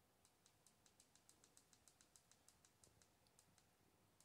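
Faint, rapid clicking of a smartphone's side volume button pressed over and over, about five clicks a second, scrolling the highlight through the Android recovery menu.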